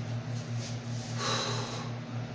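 A short, sharp breath through the nose about a second in, over a steady low hum.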